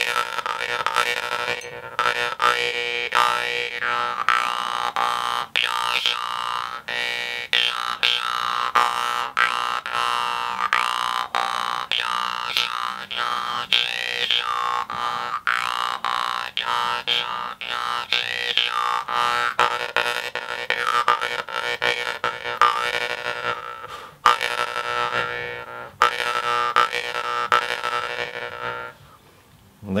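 Metal mouth harp (jew's harp) pressed against the teeth and plucked in a steady rhythm: a constant buzzing drone with an overtone melody that shifts as the mouth and breath change shape. It pauses briefly late on and stops about a second before the end.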